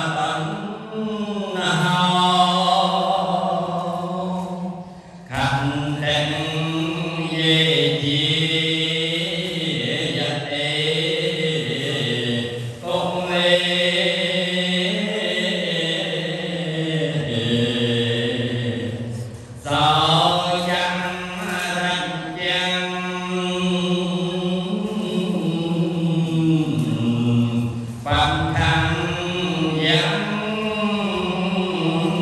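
A single elderly man's voice chanting Khmer Buddhist verses into a microphone in long, melodic held phrases, pausing briefly for breath every several seconds.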